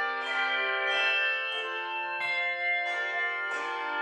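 Handbell choir playing a slow piece: struck handbell chords about every two-thirds of a second, each chord left ringing on under the next.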